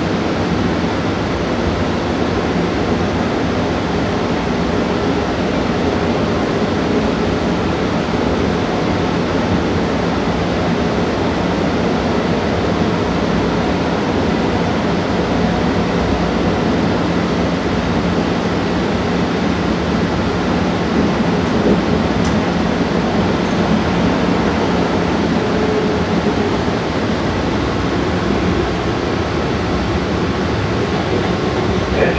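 MBTA Green Line light-rail car running along the track, heard from inside the car: a steady rumble and rush of wheels on rail. A low steady hum runs under it and stops about twenty seconds in.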